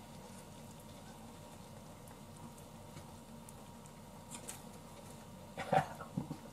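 Quiet stirring of thick beef curry in a saucepan with wooden chopsticks: a low, faint background with a few soft ticks and taps, a couple about four and a half seconds in and more near the end.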